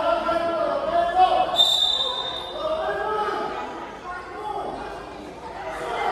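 Young players' voices calling out in an echoing gym hall, mixed with a volleyball being hit and bouncing on the court. A brief, thin high squeak comes about one and a half seconds in.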